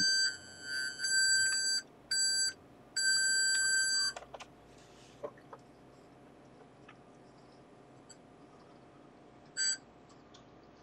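Maxitronix kit brightness-alarm circuit sounding its 1.5 kHz square-wave tone through its small speaker. The beep cuts in and out in four bursts over the first four seconds as the circuit responds to light, then stops, with a short crackle near the end.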